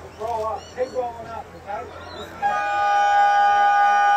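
Ground siren at an Australian football match sounding one loud, steady blast of about two seconds, starting about halfway in, signalling the end of the quarter-time break. Before it, a man's voice is heard addressing the huddle.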